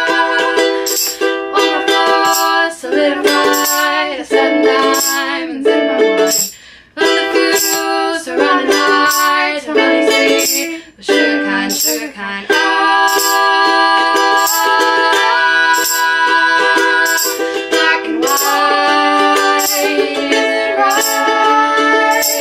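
Ukulele strummed with two female voices singing in harmony, and a handheld tambourine's jingles struck on a steady beat. The music drops out briefly twice, near seven and eleven seconds in.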